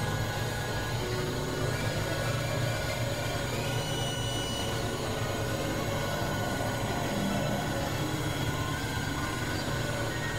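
Experimental synthesizer drone music: a steady low drone under a dense haze of noise, with thin high tones fading in and out.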